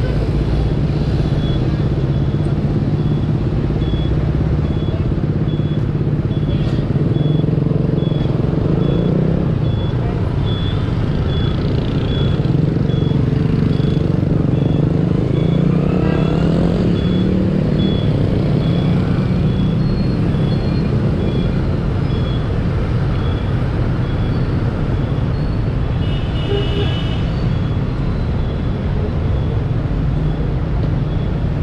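Steady hum of a motorbike engine and surrounding street traffic heard from the rider's seat. A thin high beep repeats evenly about every two-thirds of a second for most of the stretch, and a brief louder high sound comes near the end.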